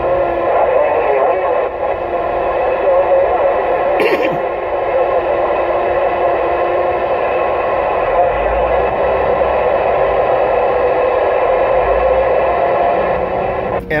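Uniden Grant XL CB radio's speaker playing an incoming transmission from another station. It is a thin, band-limited sound: a voice garbled beyond understanding under hiss and steady whistling tones.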